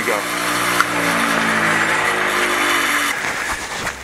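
Bench grinder running with no work on the wheel, its motor pitch slowly falling over about three seconds as it winds down; the sound cuts off near the end.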